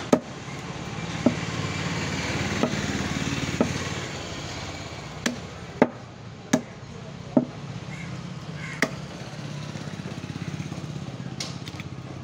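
A meat cleaver chopping goat head meat and bone on a wooden stump block: about nine sharp chops at uneven intervals, most of them in the first nine seconds. A low steady rumble runs underneath, swelling and fading twice.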